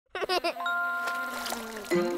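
Cartoon logo jingle: three quick bouncy notes, then a chime-like chord held and slowly fading, with a short falling slide near the end.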